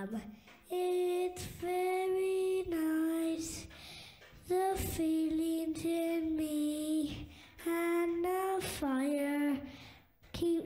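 A woman's high voice singing a slow, lullaby-like melody in long held notes, with short breaks between phrases and little or no accompaniment.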